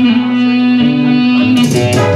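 Dance band music striking up, with long held chords. Percussion hits come in near the end.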